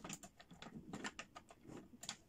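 Faint, irregular clicks of a small steel safe's lock mechanism as its key and handle are turned by hand, about five small clicks a second.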